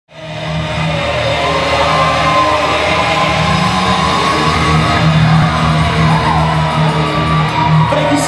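Live rock band playing in a large hall, with crowd shouting over the music. The sound fades in quickly at the start and then runs at a steady, loud level.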